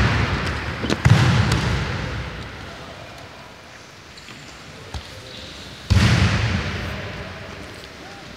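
Heavy thuds of wrestlers' bodies hitting a wrestling mat: one at the start, one about a second in and one about six seconds in, each followed by a long echoing fade in a large gym hall.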